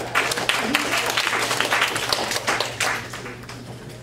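Audience clapping: a burst of applause that dies away after about three seconds, with a voice briefly heard through it.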